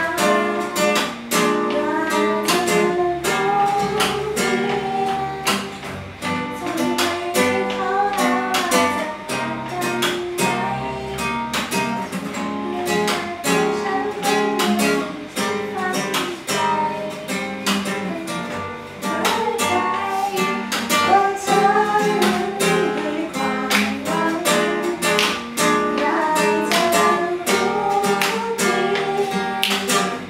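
A young woman singing a song while strumming chords on a nylon-string classical guitar, the strokes coming in a steady rhythm under her voice.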